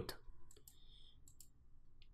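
A few faint computer mouse clicks, made while choosing an option from a drop-down list.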